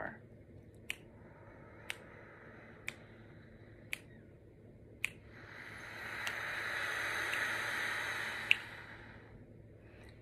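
A person breathing in slowly and evenly for about four seconds, then breathing out in a louder, steady rush of air for about four more, a controlled four-count inhale and four-count exhale of a breathing warm-up for horn playing. Sharp finger snaps tick along at about one a second during the inhale, keeping the count.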